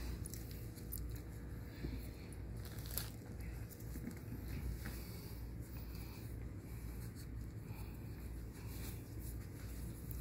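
Faint rustling of gauze dressing being pressed and wrapped over a leg wound by gloved hands, over a low steady rumble, with a soft click about three seconds in.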